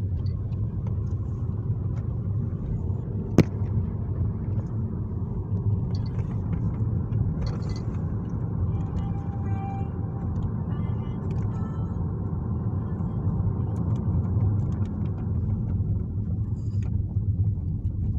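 Steady low rumble of a car heard from inside its cabin, with one sharp click about three and a half seconds in.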